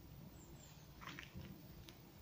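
Near silence, with a few faint soft clicks of rue stems being pinched and handled.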